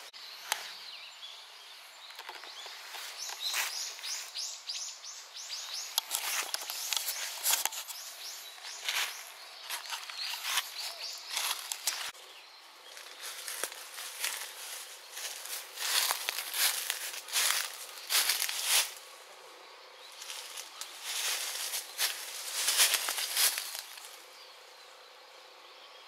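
Outdoor ambience with irregular short rustles and crackles, some coming in quick runs, over a steady background hiss.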